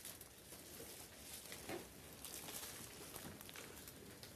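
Faint room ambience with scattered soft rustles and light clicks.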